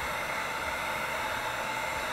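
Heat gun running with a steady hiss of blowing hot air, held over wet acrylic paint to make the silicone in it react and form cells.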